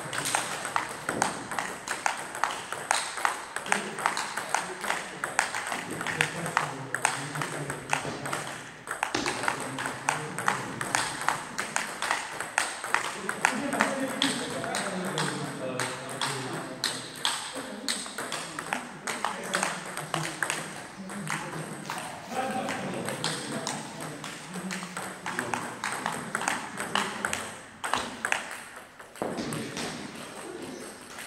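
Table tennis balls clicking off bats and the table in rallies, many sharp clicks a second, with short pauses between points.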